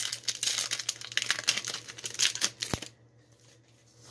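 Foil wrapper of a Pokémon card booster pack crinkling and tearing as it is pulled open by hand, with a single sharp tick, then it stops about three seconds in.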